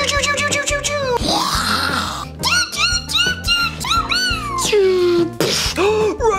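Blaster noises made by mouth for toy laser guns: a quick rattle of pulses, then a run of short 'pew' chirps and falling whistles. Background music plays under them.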